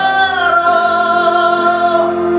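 A man singing into a handheld microphone over musical accompaniment, holding one long note from about half a second in.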